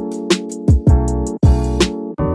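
Background music: a steady drum beat with fast hi-hat ticks and two heavier snare-like hits under sustained keyboard chords.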